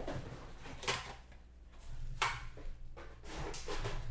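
Handling noise of a trading-card box and its packaging being moved on a table: a few separate knocks and scrapes over a low hum.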